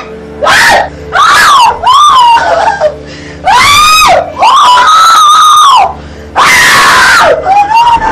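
A person screaming, a string of about seven loud cries each half a second to a second and a half long, the pitch rising and falling within each cry, with short breaks between.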